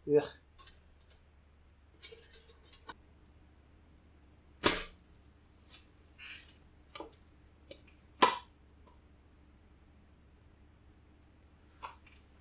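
Sharp clicks and clacks as a pop-up toaster is worked, with two loud clacks about four and a half and eight seconds in, the second with a short ring.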